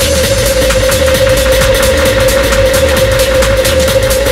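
Techno in a continuous DJ mix. A steady high synth note is held over fast, even hi-hat ticks and a pulsing bass.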